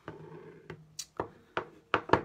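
An ink pad dabbed against a clear acrylic stamp block to load ink, giving about five light, sharp taps of plastic on acrylic in the second half.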